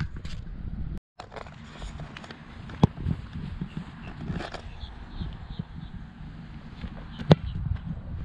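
A football place kick: one sharp, loud thud of the kicker's foot striking the ball off the block, near the end, over a steady wind rumble on the microphone. A fainter knock comes about three seconds in.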